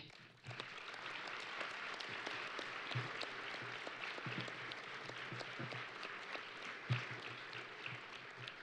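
Audience applauding after the end of a lecture, starting about half a second in and going on steadily.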